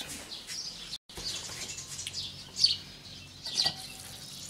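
Small birds chirping in the background, short falling chirps repeated several times, with a brief cut to silence about a second in.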